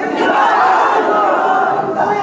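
A large crowd of many voices calling out at once, loud and without pause.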